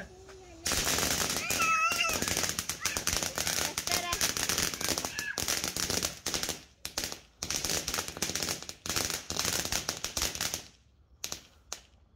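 A ground firework fountain crackling: a dense, rapid stream of pops starts just under a second in, runs for about ten seconds, then cuts off, followed by a couple of last pops.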